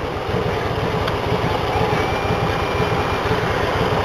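Steady engine and road noise of a car moving slowly in city traffic, heard from inside the car.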